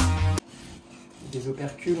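Electronic music that cuts off suddenly less than half a second in, followed by the faint scraping of an uncapping knife slicing the wax cappings off a frame of honeycomb, under a man's voice.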